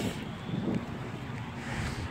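Wind rumbling on a phone's microphone outdoors: a steady low noise with no distinct events.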